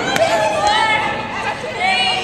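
Several young women's voices shouting and chattering over one another, echoing in a large indoor hall, with a few sharp knocks.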